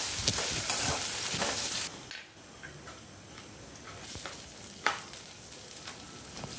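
Sliced onions sizzling in hot mustard oil in a metal kadai while a metal spatula stirs and scrapes through them in several strokes. About two seconds in, the sizzle drops sharply to a faint hiss, and there is one sharp knock about five seconds in.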